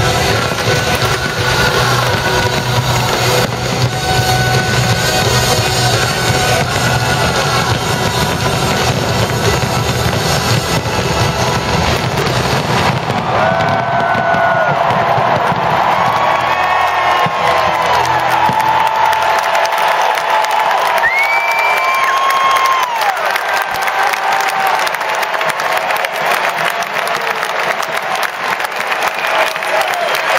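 Fireworks crackling and banging with a low rumble, mixed with loud music and a cheering crowd. About halfway through the dense crackle thins, leaving the music, gliding pitched tones and crowd noise with scattered pops.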